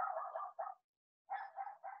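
A dog barking outside, faint, in two quick runs of several barks each, the second starting a little over a second in.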